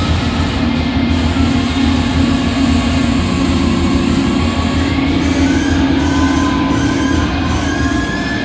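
Loud live rock band with saxophone: a dense, steady wall of distorted guitar and bass holding a low drone, with long held notes gliding upward above it in the second half.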